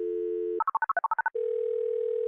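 A telephone dial tone, cut off after about half a second by a quick run of about eight touch-tone keypad beeps as a number is dialled. A single steady tone follows.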